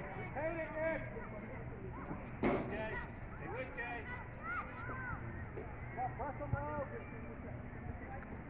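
Scattered distant shouts and calls of people at a youth soccer game, short rising-and-falling cries over a steady outdoor background. A single sharp thump comes about two and a half seconds in.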